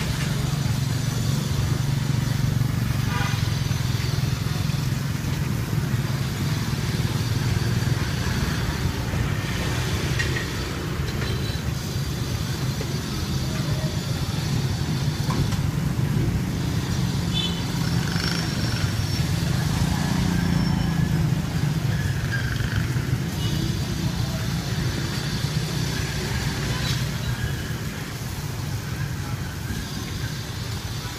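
Steady low rumble of motor traffic, with motorcycle engines, and voices in the background now and then.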